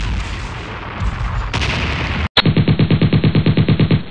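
Battle sound effects in a war-film soundtrack: a dense rumble of explosion and battle noise, cut off suddenly just over two seconds in. It is followed by rapid machine-gun fire, a fast, even stream of shots.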